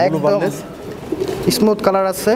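Domestic fancy pigeons cooing in their cages, a low wavering coo under a man's voice.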